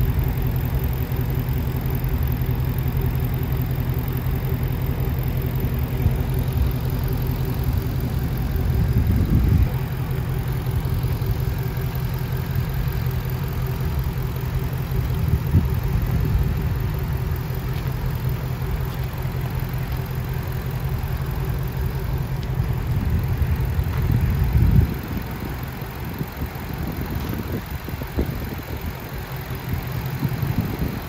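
2018 Shelby GT350's 5.2-litre flat-plane-crank V8 idling steadily with the hood up, with a brief rise about nine seconds in. Near the end it surges briefly and then runs noticeably quieter.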